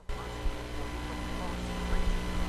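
A steady hum and hiss that cuts in abruptly, with faint voices underneath.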